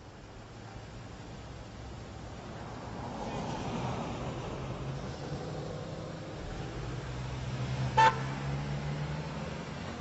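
Street traffic: cars passing with a steady rumble that swells and fades, and one short car horn toot about eight seconds in, the loudest sound.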